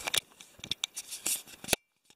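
Handling noise from a phone held close as it is turned around: a string of short scratchy rubs and clicks, ending in a sharp loud click near the end, after which the sound cuts off suddenly.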